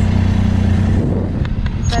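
Motorcycle engine running steadily at road speed under road and wind noise; its steady low note drops away about halfway through, and a few short sharp clicks come near the end.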